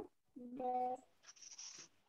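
A voice briefly holding one steady note, then a short scratchy hiss.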